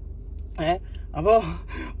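A man speaking Malayalam in short phrases with brief pauses, over a steady low hum.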